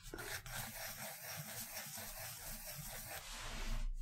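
Graphite pencil rubbing and scratching on sketchbook paper, faint and steady, as loose repeated strokes rough in a large oval.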